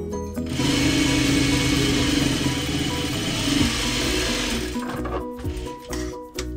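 Electric sewing machine stitching fabric, running steadily from about half a second in and stopping a little before the end, over background music.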